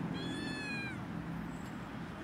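A kitten's single high meow, about a second long, falling in pitch at the end.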